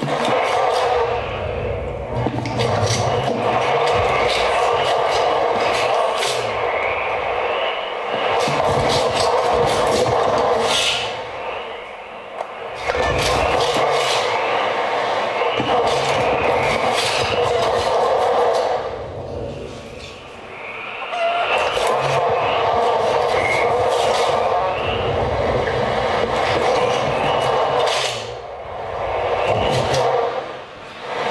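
Live experimental electronic noise music: a dense, grainy wall of noise with crackles over it, in long swells that drop away briefly about every eight seconds.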